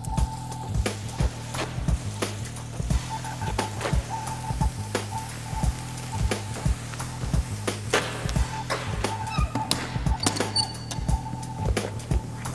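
Background music with a steady percussive beat and a held high note that drops out near the end.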